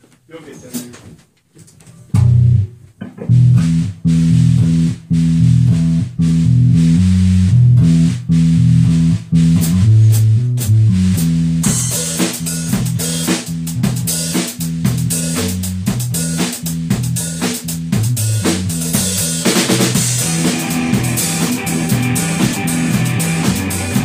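A rock band playing. A bass line of low, stepping notes comes in about two seconds in, and the drum kit with cymbals joins about halfway through, along with guitar.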